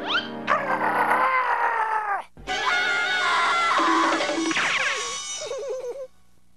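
A cartoon cat's long, wavering scream of fright over orchestral cartoon music. The sound cuts out briefly a little after two seconds in.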